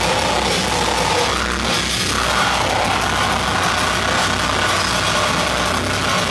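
Live metal band playing: electric guitars, bass and drum kit, loud and continuous.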